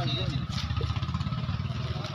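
A low, rapidly pulsing engine rumble, like a motor idling nearby, with people talking faintly underneath.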